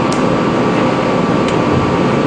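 Steady, fairly loud rushing background noise of the room with a faint constant hum and a couple of small clicks.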